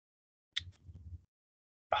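Near silence, broken by a brief faint noise about half a second in. A man's voice starts speaking right at the end.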